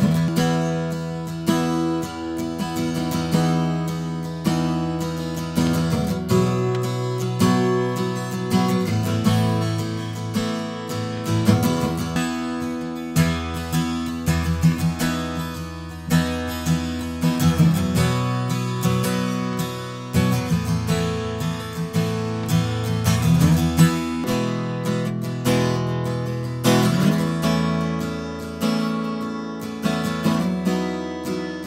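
Steel-string dreadnought acoustic guitars played solo: picked and strummed chords and single notes, each ringing and fading. The playing moves between a Martin D-28 strung with Ernie Ball Earthwood 80/20 bronze light strings and a Gibson J-45 Custom strung with Ernie Ball Aluminum Bronze light strings, then back again.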